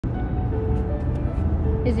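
Steady low rumble of a car cabin under way: road and engine noise heard from inside the car.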